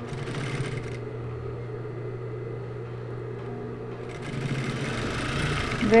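Industrial sewing machine stitching a seam through thick layers of felt over a steady motor hum; the stitching sounds in about the first second, eases off, then picks up again over the last two seconds.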